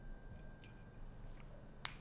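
Quiet room tone with a couple of faint ticks and one sharp click shortly before the end.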